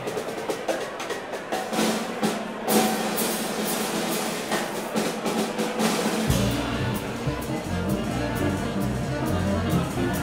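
Live small-band swing jazz: a drum kit plays alone for about six seconds, with quick stick strikes on drums and cymbals. Then the full band comes back in, upright double bass walking underneath saxophone, clarinet and trombone.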